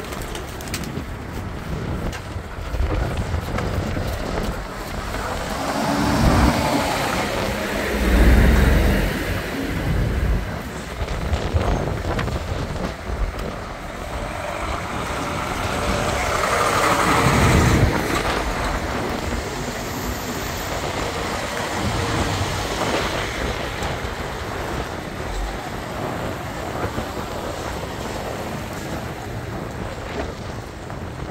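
Lorries and cars driving past close by one after another, engines and tyres rising and fading with each pass. The loudest passes come about 8 and 17 seconds in, as heavy trucks such as a Scania lorry go by.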